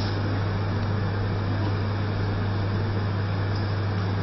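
Steady electrical hum and hiss in the sound system: a loud unbroken low hum with an even hiss over it, and no change throughout.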